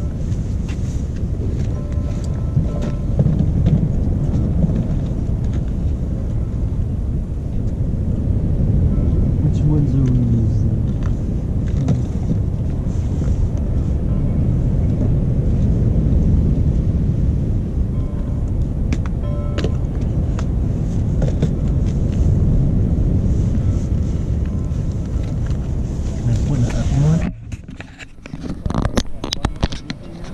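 Low, steady rumble of wind buffeting the microphone, with faint voices now and then. Near the end the rumble drops away suddenly and a few knocks follow.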